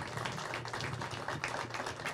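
Audience applauding: many hand claps at a steady, moderate level.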